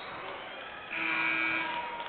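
Gym scoreboard horn sounding once for just under a second, a steady buzzing tone, over the murmur of the crowd while play is stopped.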